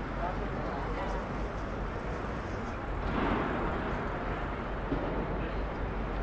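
Busy city street ambience: a steady din of traffic rumble and passers-by's voices, with a louder swell of noise about three seconds in.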